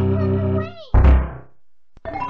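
Synthesized video-game music: a held chord with a few sliding notes that fades out. It is followed about a second in by a single loud, sudden thump.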